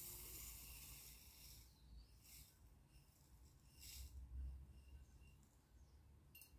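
Dry rice pouring from a glass jar into a bowl: a soft hiss of grains that tails off over the first two seconds, then two short faint trickles as the last grains are tipped out of the upturned jar.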